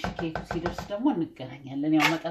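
A quick run of light clicks or taps in the first second or so, with a woman's voice over and after them.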